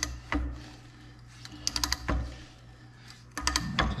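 Manual ratcheting pipe threader being worked by its long handle on a pipe held in a bench vise, starting a new thread: the ratchet clicks in three short bursts, near the start, in the middle and near the end, with dull knocks between.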